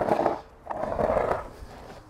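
Skateboard scraped by hand along the edge of a concrete table-tennis table, testing whether the edge will grind. One scraping pass, from about half a second in to under a second and a half.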